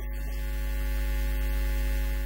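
A steady low hum with several held tones above it, slowly growing louder.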